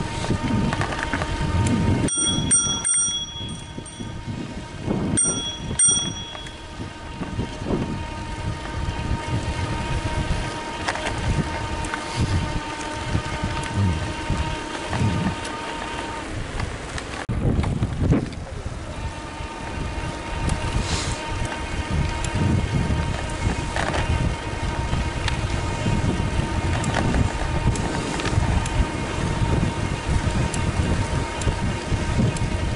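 Bicycle ridden along a paved path, with wind rumbling on the microphone and a steady high whine that drops out briefly past the middle. A bicycle bell rings in two quick bursts, about two and five seconds in.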